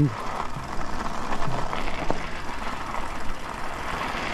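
E-bike riding over packed snow and ice: a steady noise of tyres rolling on the frozen surface and wind on the microphone, with a faint knock about two seconds in.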